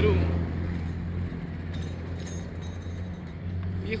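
Small motorcycle-taxi (mototaxi) engine running close by, a steady low drone that fades about a second in as it pulls away, leaving faint street traffic.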